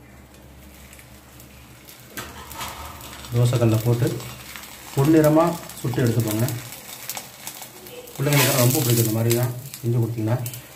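A man's voice in short phrases, starting about three seconds in after a quiet stretch of faint background hiss.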